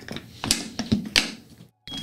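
Latches of a black hard-shell plastic carrying case being snapped open: two sharp clicks, about half a second and a second in, with the rustle of handling the case.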